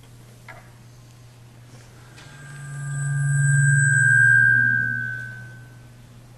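Public-address feedback from a lectern microphone: a steady high ring over a low hum, swelling up about two seconds in and fading away about three seconds later.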